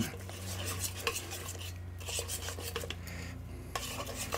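Metal hand dough hook stirring a wet flour-and-water batter in a stainless steel mixing bowl: irregular light scrapes and clicks of metal on the bowl.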